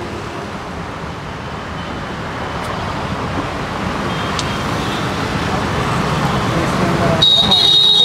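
Road traffic noise from passing vehicles, swelling gradually as a vehicle draws nearer. Near the end a steady high-pitched tone starts up and holds.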